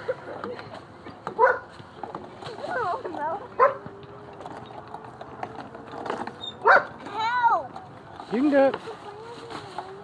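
Young children's voices: short high-pitched cries, calls and squeals, a few of them sharp and loud.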